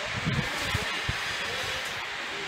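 Steady outdoor background hiss picked up by the camera's microphone, with a few faint, brief low sounds in the first second.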